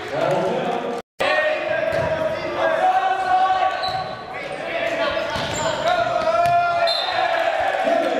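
Players and spectators shouting and cheering in an echoing gymnasium during a volleyball rally, with thuds of the ball among the voices. The sound cuts out completely for a moment about a second in.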